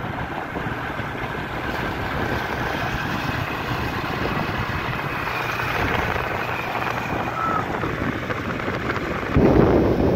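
A TVS Apache motorcycle's single-cylinder engine running steadily while riding, mixed with wind rushing over the microphone. A little over nine seconds in, the wind on the microphone suddenly gets louder and buffets.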